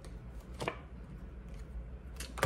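Tarot cards handled as one is drawn from the deck, with a single sharp snap of card about two-thirds of a second in, over a faint low hum.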